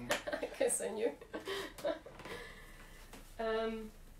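Quiet, low-level talk with a chuckle, then a short steady held note lasting about half a second near the end.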